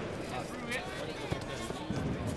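Indistinct voices and calls in a sports hall, overlapping, with a couple of short thuds about a second in and near the end.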